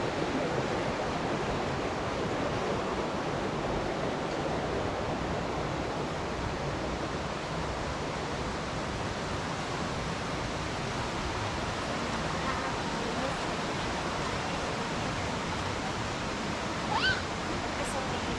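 Steady rush of a rocky stream running through the ravine. A single short rising whistle sounds about a second before the end.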